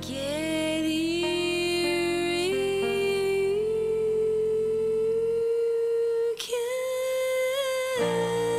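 A woman's voice holding long wordless notes that step upward in pitch over a sustained piano chord. The chord stops about five and a half seconds in. After a brief break the voice holds one more note with a slight waver.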